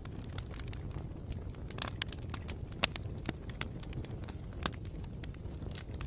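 Wood campfire crackling and popping: frequent irregular sharp snaps over a steady low rumble of the burning fire.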